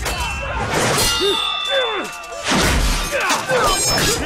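Sword blades clashing in a melee: a metallic clang about a second in rings on for about a second, a heavy thud follows, and another ringing clang comes near the end. Men's battle shouts run throughout.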